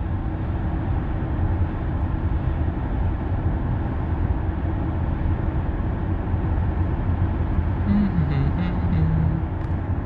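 Steady road and tyre noise inside a Tesla's cabin while it cruises at highway speed: an even low rumble, with no engine note from the electric drive.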